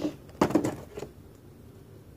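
Cardboard-and-plastic toy packaging being handled and pried at by hand, with a short loud rustle-and-knock about half a second in and a smaller one near one second, then faint handling sounds.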